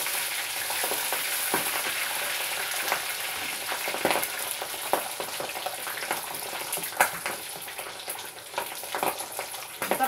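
Breaded chicken drumsticks deep-frying in a saucepan of hot oil: a steady sizzle with scattered sharp pops of spattering oil.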